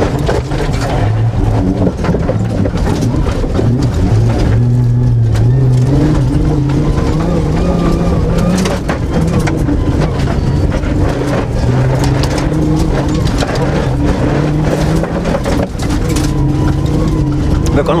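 Suzuki Grand Vitara rally car's engine under hard driving, heard from inside the cabin, its pitch climbing and dropping again and again, with frequent sharp knocks and rattles from the car running over the rough dirt track.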